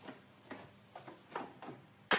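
A few faint clicks and light knocks, about one every half second, from handling around the car's bare body and wheel arch.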